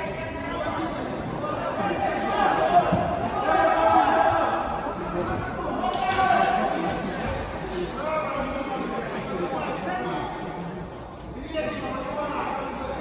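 Indistinct voices calling and chattering, echoing in a large hall, with a few thuds; the sharpest thud comes about six seconds in.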